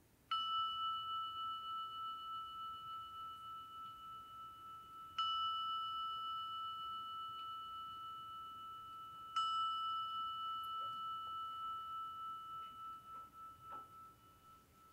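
A meditation bell struck three times, about four to five seconds apart, marking the close of the meditation. Each strike rings on one clear tone with a fainter higher overtone, fading with a slow wobble.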